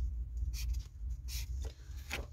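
Felt-tip marker writing on paper: a series of short, scratchy strokes as letters are drawn.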